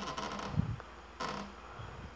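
Masking tape rustling and crinkling as it is wrapped by hand around a wire, with a soft bump about half a second in and a short brighter rustle a little after one second, over a faint steady low hum.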